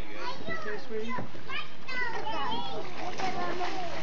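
Several children's voices talking and calling out over one another, with water splashing in a swimming pool.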